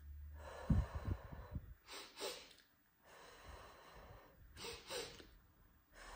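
A woman doing a double-inhale breathing exercise: a long exhale through pursed lips, then two quick sniffing inhales through the nose followed by another long exhale, and two more quick sniffs near the end.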